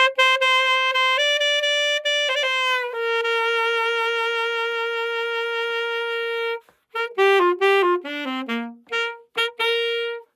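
Solo alto saxophone playing an ad-lib ending phrase: a few held notes with a quick ornament, a long steady note, then a fast falling run of short notes and a final held note.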